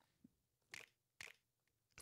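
Near silence, with two faint short clicks about half a second apart in the middle.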